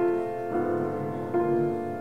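Piano playing slowly and quietly, a new chord sounding about every second, each left to ring into the next.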